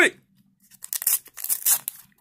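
A trading-card blister pack being torn open: a string of irregular tearing and crinkling noises starting about half a second in.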